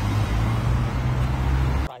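Road traffic at a roundabout: a steady low engine hum with tyre and road noise, cut off abruptly near the end.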